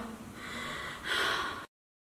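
A woman's short breathy exhale about a second in, without voice. After it the sound cuts off to dead silence near the end.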